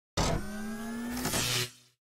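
Short electronic logo sting sound effect: it starts suddenly with a steady low hum and faint slowly rising tones, swells into a brighter noisy burst about a second and a half in, then fades out.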